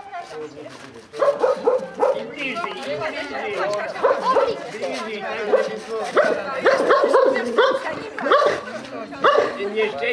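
A group of people talking over one another while a dog barks repeatedly, starting about a second in.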